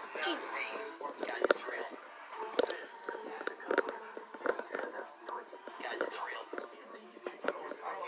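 Hushed whispering in a small room, with irregular clicks and knocks from the handheld phone being moved about.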